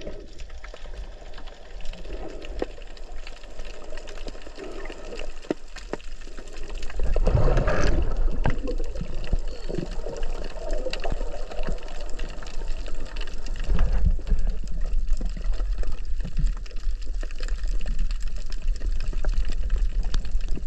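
Water sloshing and gurgling around a camera held underwater by a snorkeller, over a steady low rumble, with scattered small clicks. It gets louder about seven seconds in and stays louder.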